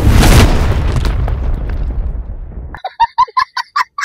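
Logo sting sound effects. A deep, rushing whoosh peaks right at the start and fades away over about three seconds. Near the end it gives way to a quick run of short, sharp, chicken-like clucks.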